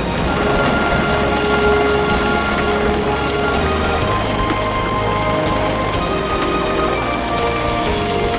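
Background music with long held notes over a steady rushing noise.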